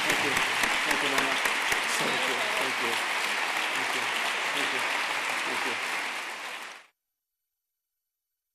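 Audience applause in an auditorium, steady clapping with voices under it, fading out and ending in silence about seven seconds in.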